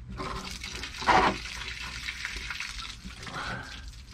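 Water running and splashing in a well shaft, with a louder surge about a second in.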